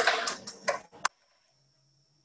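Brief rustling of climbing rope and hitch cord being handled, with a few sharp clicks, cutting off about a second in.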